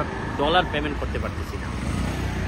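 A man speaks briefly over a steady low rumble of road traffic.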